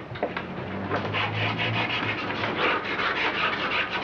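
Paint brush rubbing across a painting board in quick repeated scrubbing strokes, about three or four a second, picking up pace about a second in.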